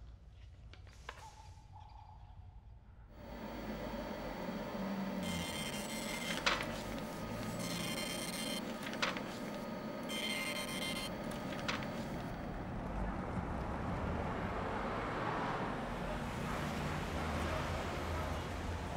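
Street ambience: after a few quiet seconds a steady low traffic rumble sets in, with three sharp clicks a few seconds apart.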